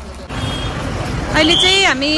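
Street traffic noise, then a person's loud voice calling out with a falling pitch about a second and a half in.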